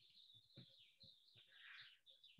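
Near silence, with faint high chirping in the background.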